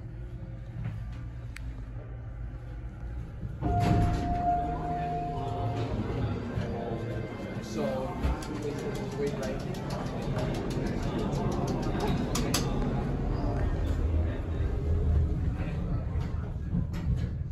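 Otis Series 2 elevator running during a ride up, with a steady low hum. About four seconds in the level rises with a single steady tone lasting about two seconds, followed by scattered clicks and voices in the background.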